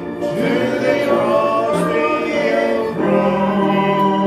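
Church hymn singing: voices led by a man at the pulpit, held in long notes, with a new phrase starting about three seconds in.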